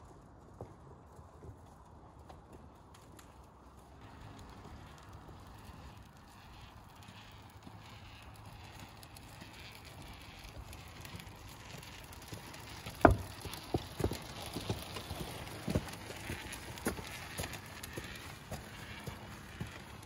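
A wheelchair rolling along a pavement with the pusher's footsteps, faint at first and growing louder as it comes closer, with several sharp knocks in the second half.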